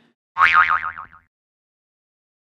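A cartoon "boing" sound effect: one springy tone that wobbles rapidly in pitch and drifts slightly lower, lasting under a second.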